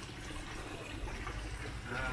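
Steady, low-level sound of running water at concrete fish ponds, with a low rumble beneath it.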